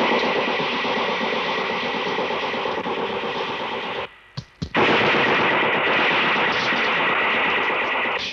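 Loud, steady rushing hiss that cuts off abruptly about four seconds in and starts again half a second later.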